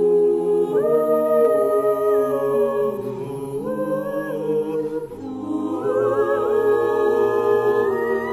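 An a cappella choir of mixed men's and women's voices holding long sustained chords. The chord moves to a new one about a second in, again around three seconds, and again near six seconds.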